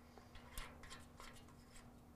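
Near silence, with a few faint small metallic clicks and rubbing as a nut is threaded onto the stem of a dial thermometer fitted through a steel smoker lid, the loudest click about half a second in; a faint steady hum underneath.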